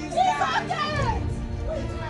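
Background music with a voice over it, the voice strongest in the first second.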